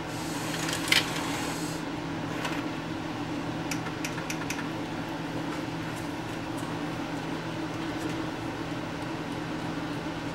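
Opened VHS VCR's tape mechanism running with a steady hum after an eject command that it fails to carry out: instead the reels are slowly turning the tape backwards. There is a sharp click about a second in, and a few lighter ticks a few seconds later.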